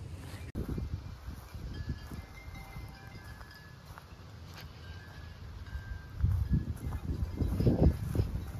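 A few short, high ringing tones of differing pitch, scattered and faint, over a low irregular rumble that grows louder near the end.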